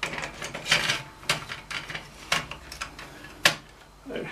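About half a dozen sharp clicks and knocks at irregular intervals: hardware being handled and fitted in an open metal computer case.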